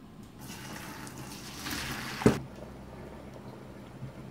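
Cooking water from boiled potatoes poured out of a steel pot into a stainless steel colander in a metal sink: a rushing splash that builds, then stops with a single sharp knock a little over two seconds in.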